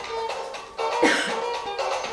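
Semba dance music playing, with a cough from someone in the room about a second in.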